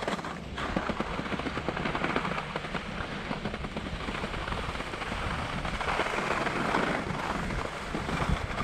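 Wind buffeting a GoPro's microphone in a steady low rumble while its wearer slides downhill, mixed with the rasping scrape and chatter of edges on hard-packed groomed snow.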